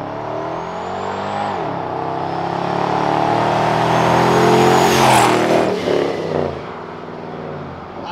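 TorqStorm-supercharged RAM 1500 pickup accelerating hard toward and past, its engine note rising with a high supercharger whine. The pitch drops at a gear shift about one and a half seconds in, then climbs again to the loudest point about five seconds in as the truck passes, and falls as it pulls away.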